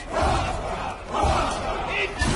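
Two loud, rough shouts or roars from voices, one at the start and one about halfway through, each lasting about half a second.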